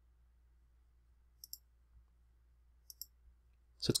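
Two faint computer mouse clicks, each a quick double tick, about a second and a half apart, over a low steady hum.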